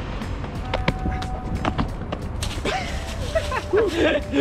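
Running footsteps slapping on pavement during a parkour run-up and jump, with wind rumbling on the action camera's microphone. A voice cries out near the end.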